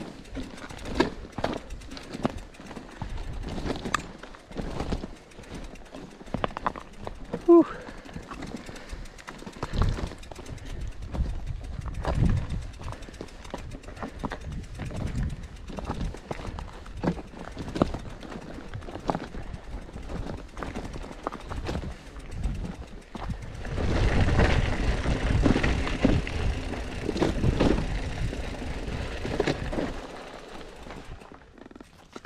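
Loaded bikepacking bike pushed up a rocky trail: irregular rattles and knocks from the bike and its bags, with footsteps on gravel and dirt. A louder rushing noise comes in for several seconds near the end.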